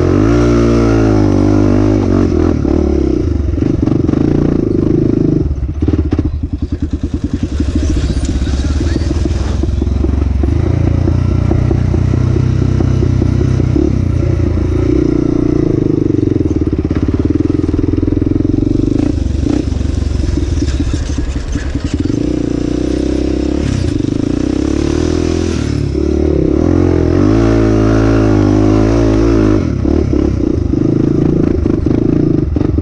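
Honda 400EX sport quad's single-cylinder four-stroke engine, throttled up and eased off over and over on sandy hill climbs and drops. Its pitch sweeps up near the start and again near the end. About six seconds in it falls to a lower, pulsing note before picking up again.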